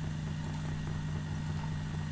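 A steady low hum with a faint even hiss, unchanging throughout: the background noise of the voice-over recording with no one speaking.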